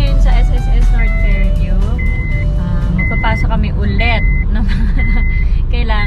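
A car's warning chime beeping steadily about once a second, a short high tone each time, over engine and road rumble inside the cabin. Voices run alongside it.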